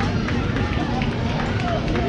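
Indistinct voices of several people talking at once, none clear enough to make out, over a steady low rumble.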